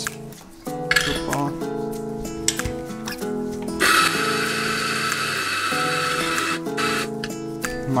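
Mazzer Mini Electronic A espresso grinder grinding coffee into a portafilter for about three seconds, starting about four seconds in, heard over background music.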